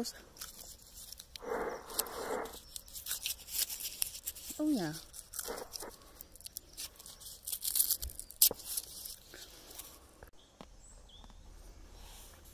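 Horse crunching Polo mints close to the microphone, a run of crisp crackly crunches, with a short breathy noise about a second and a half in.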